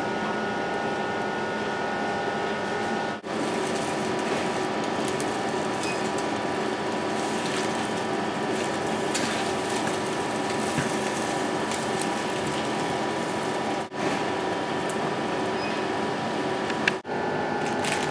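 Whole squid in ginger miso marinade sizzling as it fries in a pan, over a steady mechanical hum with a few held tones. The sound drops out briefly three times, at about 3, 14 and 17 seconds.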